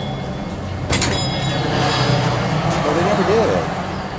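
A motor vehicle passing close by: a broad noise with a low hum swells over about two seconds and eases off near the end. A sharp knock sounds about a second in, and faint voices come in near the end.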